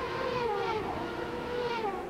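Engine note of 1995 CART Indy cars, turbocharged V8s at high revs racing in close company. It is one steady high note that sags slightly in pitch partway through, then holds.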